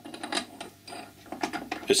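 Threaded steel bar knocking and clicking loosely in a 5/16 Whitworth split round die, a string of light, irregular metallic clicks: the thread is slack in the die, which is too large for it.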